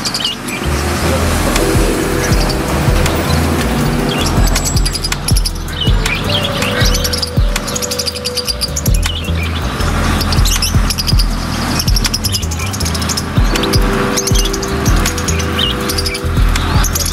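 Background music with a steady bass line that comes in about a second in, with bird chirps sounding over it throughout.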